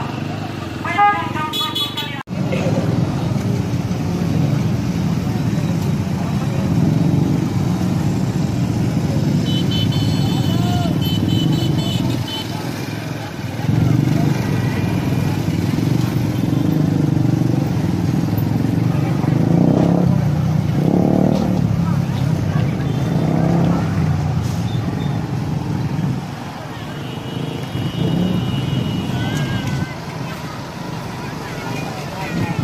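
Busy road traffic: motorcycle and truck engines running and passing close by, with vehicle horns tooting a few times.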